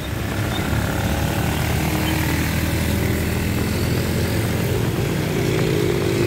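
Steady drone of motor traffic passing close on a rain-wet road: motorcycle and car engines running with a hiss of tyres on the wet surface, with no sharp events.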